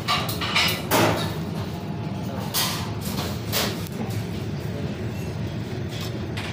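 Commercial kitchen background: a steady low hum with a few sharp knocks and clatters, the loudest about a second in.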